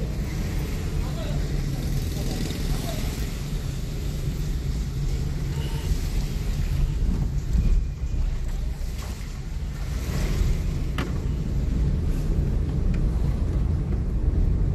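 Car driving slowly on a city street, heard from inside the cabin: steady low engine and road rumble with tyre noise. A brief click comes late on.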